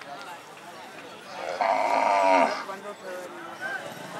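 A bullock lowing once, a loud call of about a second beginning midway, over the steady chatter of a crowd.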